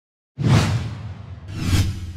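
Logo-sting whoosh sound effect: a sudden whoosh about a third of a second in that fades away, then a second whoosh that swells up and peaks just before the logo settles.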